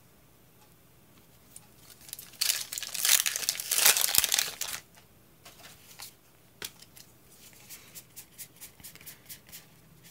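Foil booster pack wrapper crinkling and tearing open for about two seconds, a couple of seconds in. Then a string of light card flicks, about two a second, as the Pokémon cards are slid one by one.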